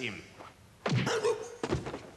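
A heavy thunk a little under a second in, followed by a few lighter knocks and thuds.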